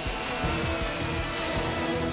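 A chainsaw running steadily as it carves a block of ice into a sculpture, with background music underneath.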